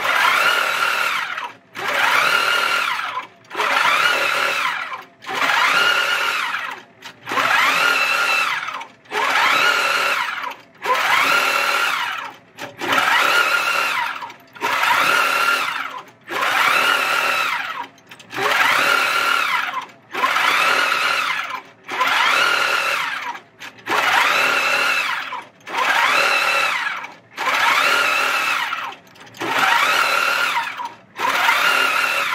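Handi Quilter longarm quilting machine stitching automatically under Pro Stitcher computer control. It sews in repeated runs of about a second and a half, one every 1.7 seconds or so, with a brief stop between runs. Within each run the pitch rises as the machine speeds up and falls as it slows again, as it stitches one straight line of the block design at a time.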